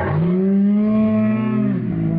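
A man's long, low, moo-like vocal call held for nearly two seconds, the pitch rising a little and dropping off at the end, with a second, lower tone joining about half a second in.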